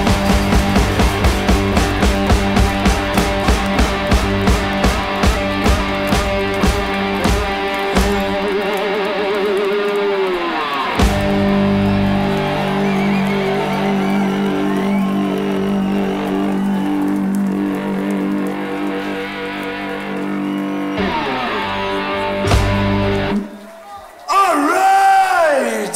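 Live blues-rock band playing electric guitar over a steady drumbeat of about three strikes a second. Around the middle, a guitar note bends downward into a long held chord, and the song ends with a final hit and cuts off suddenly near the end.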